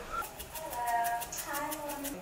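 A seasoning shaker rattled over a cooking pot in quick, even shakes, about six a second, starting about half a second in. A voice is heard faintly underneath.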